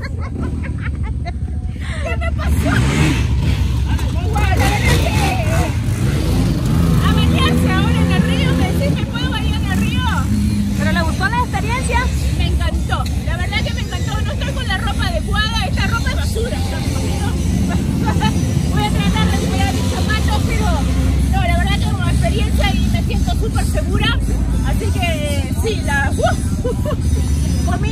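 Several people talking and chattering over the continuous low rumble of off-road vehicle engines running, growing louder about two and a half seconds in.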